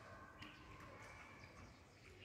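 Near silence: faint outdoor background sound with a few faint, thin tones.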